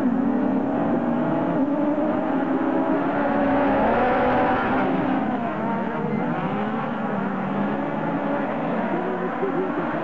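A field of 1600 cc autocross buggies launching off the start and accelerating away together, several engines revving at once with their pitch rising and dropping. The engines are loudest about four seconds in.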